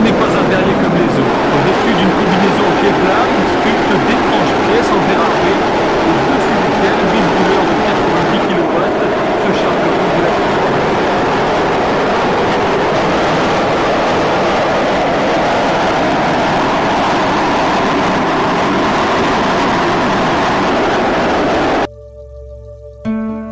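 Bank of propane glass-forming burners, each rated 90 kW, running flat out: a loud, steady rushing noise that cuts off suddenly near the end.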